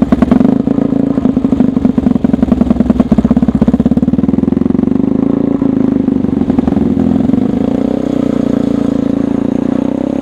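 Small single-cylinder four-stroke engine of a gyrocycle running just after starting, its separate firing beats plainly heard at first, then rising slightly in pitch and running smoother from about halfway.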